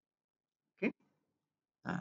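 Near silence broken by two short voice sounds from a man: a brief grunt-like vocal noise about a second in, and another short sound just before the end.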